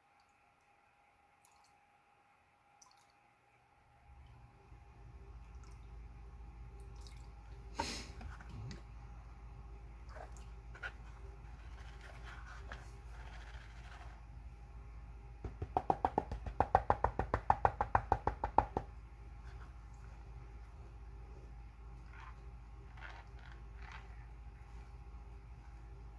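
Plastic gold pan being worked in a tub of muddy water while panning paydirt: water dripping and sloshing with small knocks, and past the middle a quick run of strokes, about five a second for roughly three seconds, as the pan is shaken side to side. A steady low hum sets in about four seconds in.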